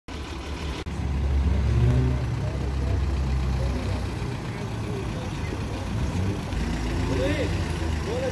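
Low, steady rumble of vehicle engines idling and road traffic, with people talking in the background. A brief drop-out just under a second in.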